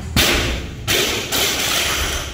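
Barbell loaded with rubber bumper plates dropped from overhead onto a wooden lifting platform: a heavy thud just after the start, then two more loud impacts about a second and a second and a half in as the bar bounces and settles.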